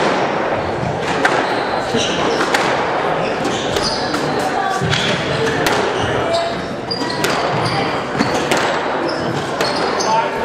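Squash rally: the ball striking racquets and the court walls with sharp cracks at irregular intervals, about one every second or two, with athletic shoes squeaking on the hardwood court floor.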